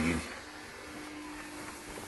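Small cooling fans in a CNC electronics enclosure running, very quiet: a soft steady whoosh with a faint steady hum that comes in about half a second in.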